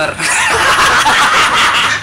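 Men laughing loudly together, setting in just after the start.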